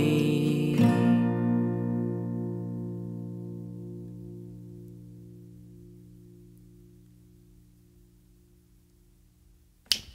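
Final chord of a steel-string acoustic guitar, struck about a second in and left to ring, fading slowly away over several seconds with a gentle wavering in its tone. A sharp click near the end.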